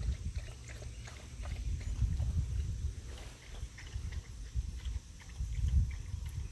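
Footsteps through pasture grass, with an uneven low rumble of handling or wind noise on the phone microphone.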